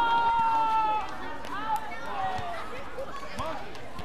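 Court shoes squeaking in short chirps on the indoor court floor as players move between points, with a longer held high tone in the first second.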